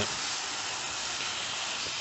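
Hornby OO gauge model steam locomotive, an LMS Duchess of Sutherland, running with its coaches round a tabletop track. Its motor and wheels on the rails make a steady, even hiss.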